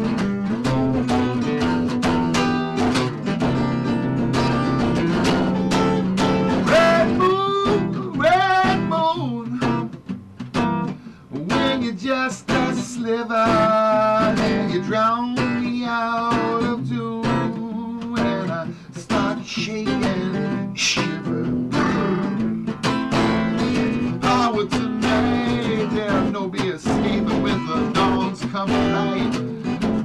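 Acoustic guitar strummed in a steady rhythm, with a man's voice singing over it through the middle stretch.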